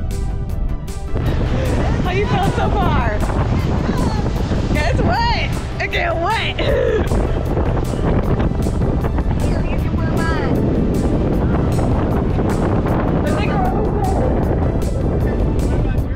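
Motorboat running at speed across open water, its engine and rushing water mixed with heavy wind buffeting the microphone; voices call out now and then over it. Background music ends about a second in, where the loud rushing noise begins.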